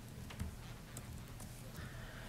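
Faint, irregular keystroke clicks from a laptop keyboard as a method name is typed, over a low steady room hum.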